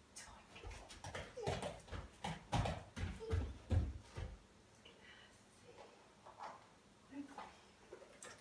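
A dog's paws knocking and thudding as it steps about on an inflatable FitBone balance platform and spiky half-ball balance pods. A quick cluster of footfalls comes between about one and four and a half seconds in, with a few lighter taps after.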